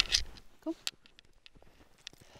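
Faint, scattered crunches of footsteps in deep powder snow, after a sharp click at the very start.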